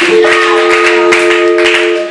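A keyboard holds a sustained chord over quick percussive hits, about four a second.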